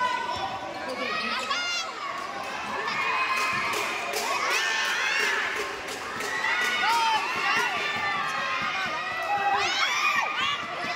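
Crowd of spectators shouting and cheering at a basketball game, with a basketball bouncing on the court.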